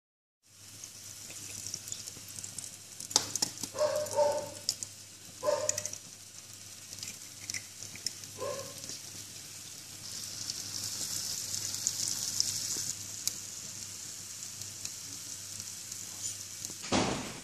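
Egg frying in butter in a Tefal non-stick pan over a low gas flame: a steady sizzle that grows louder about ten seconds in. A few sharp knocks and short higher-pitched sounds come between about three and nine seconds in.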